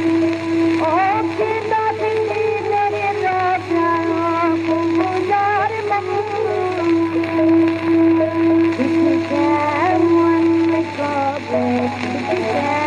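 An old gramophone recording of a Bengali kirtan: a woman singing over a held harmonium drone, with khol accompaniment, behind the steady hiss and low hum of the worn disc.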